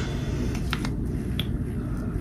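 A few light clicks from handling a small plastic makeup item, over a steady low hum.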